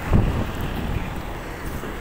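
Wind buffeting a phone's microphone: a steady low rumble, with a brief louder gust just after the start.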